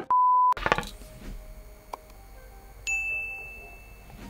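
A steady electronic beep lasting about half a second at the start, then a bright notification ding about three seconds in that rings and fades: the chime of a subscribe-button bell overlay.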